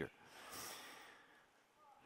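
A man's soft breath drawn in close to a headset microphone, a faint noisy inhale lasting about a second, fading out by about a second and a half in.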